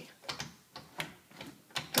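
A handful of light, irregular clicks and knocks from a louvered closet door being tried: the door is sticking.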